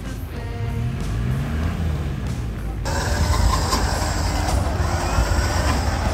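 Background music over the engine of a Land Rover Discovery stuck in deep mud. About three seconds in the sound changes abruptly to a steadier, noisier engine sound.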